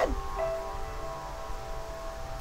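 Soft background music of long, held chime-like tones, several notes sounding together, with a new note coming in about half a second in.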